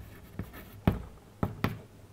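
Chalk writing on a chalkboard: about four short, sharp chalk strokes and taps as a word is written.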